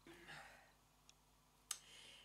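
Near silence: faint rustling and a single small, sharp click near the end as a shrink-wrapped perfume box is handled.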